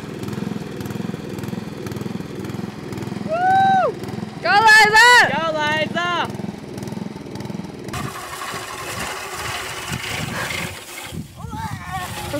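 Old riding lawn mower's small engine running steadily as it is driven, with a few loud rising-and-falling vocal calls over it between about three and six seconds in. After about eight seconds the engine sound gives way to a steady hiss.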